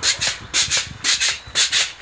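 Pogo stick bouncing on a concrete sidewalk, a short burst of scraping noise coming about every half second with the bounces.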